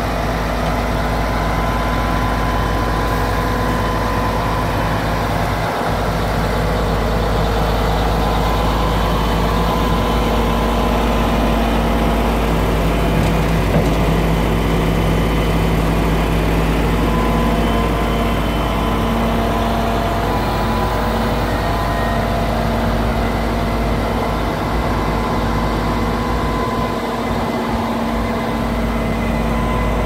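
Mercedes-Benz Actros 3236 K concrete mixer truck's V6 diesel engine idling steadily, with a steady drone of several held tones.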